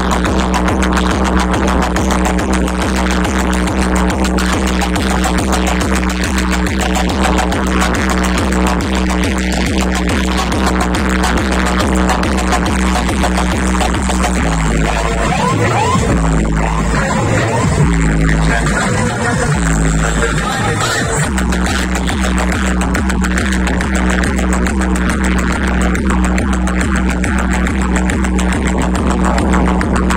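Loud electronic dance music blaring from a truck-mounted DJ speaker stack, driven by a heavy, steady bass beat. About halfway through, the beat breaks for several seconds into sliding bass tones, then returns.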